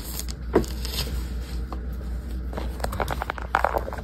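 A chunk of cornstarch being crushed and crumbled, giving dry crackling crunches: a few sharp cracks early, then a dense run of crackles in the second half, over a steady low hum.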